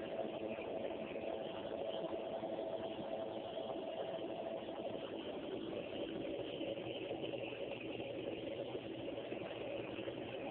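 Nebulizer air compressor running, a steady motor hum that holds constant throughout.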